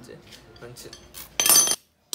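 Steel hand tools, a socket and extension bar, clinking against each other, with one loud ringing metallic clank about one and a half seconds in.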